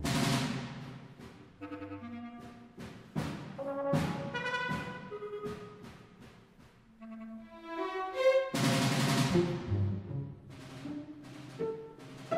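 Modernist orchestral music with sharp accented strokes from timpani and brass, separated by held pitched tones. After a quiet stretch in the middle, a loud full-orchestra chord strikes about two-thirds of the way through, and sparser notes follow.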